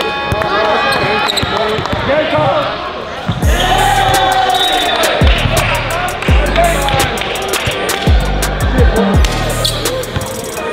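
A basketball is dribbled on a hardwood gym floor amid crowd voices. About three and a half seconds in, a music track with deep, falling bass hits comes in and carries on.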